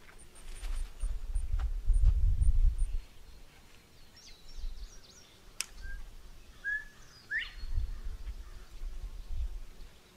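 Small birds chirping and calling in short whistled notes, with a run of high, evenly spaced ticks in the first few seconds. A low rumble is loudest from about one to three seconds in.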